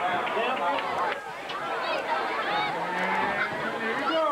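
Many voices shouting and chattering over one another: a crowd with people calling out loudly, none of it as clear words.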